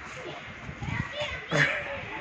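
Children's voices calling and chattering in the background, faint and high, loudest a little past the middle.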